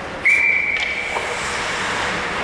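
A referee's whistle: one steady, high blast about a second long, starting suddenly a quarter second in, over the steady background noise of an ice rink.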